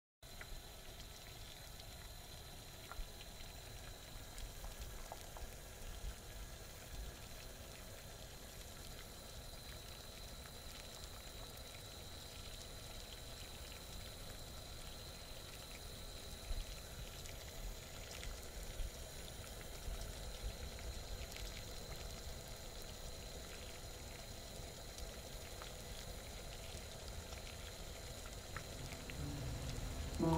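Faint water sounds from a pot heating on a gas stove: a steady low hiss with scattered small ticks and pops.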